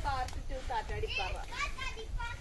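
High-pitched children's voices chattering in quick, short calls.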